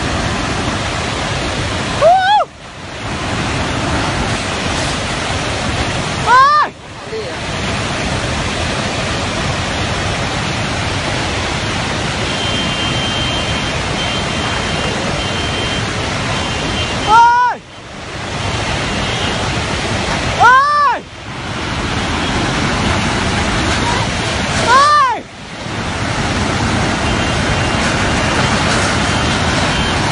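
Loud, steady rush of a torrent in flood. About five times it is broken by a brief loud cry that rises and falls in pitch, each followed by a momentary drop in the noise.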